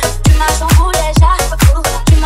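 Breaklatin dance remix at 132 bpm: a deep kick drum with a falling pitch lands on every beat, about two a second, under a bending melodic line.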